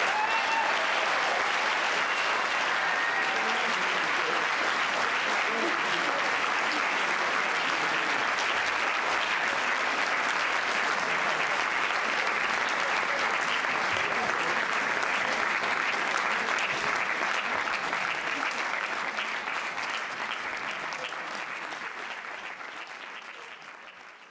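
Audience applauding at length, a dense steady clapping that fades out gradually over the last several seconds.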